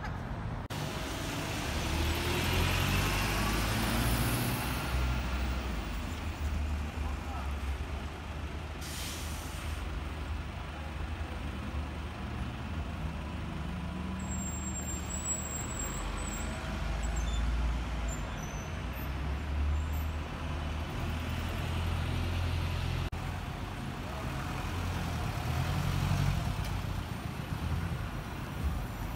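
Busy street traffic: buses and cars running and passing with a steady low engine rumble, a short hiss about a third of the way through, and passers-by talking.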